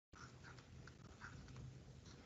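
Near silence: faint, soft scratches and taps of a stylus writing on a tablet screen, over a low steady hum.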